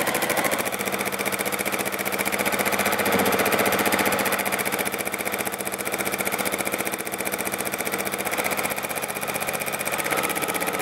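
Juki TL-2010Q semi-industrial straight-stitch sewing machine running at speed, a rapid, even clatter of the needle and mechanism as it free-motion quilts with the feed dogs lowered.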